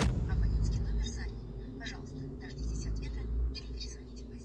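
Phone call audio over a smartphone's loudspeaker: a faint, crackly voice comes in suddenly over a low steady rumble of line noise. It is a recorded operator message, which the caller hears as saying the number does not exist.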